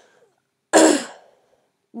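A woman's single loud, short cough, clearing her throat, about a second in.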